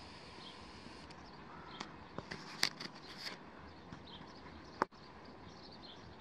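Steady wind noise in the open, with a few sharp clicks, the loudest about five seconds in, and faint high chirps.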